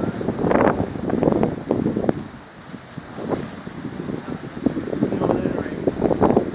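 Indistinct voices of several people talking, with wind buffeting the microphone. There is a brief lull about halfway through.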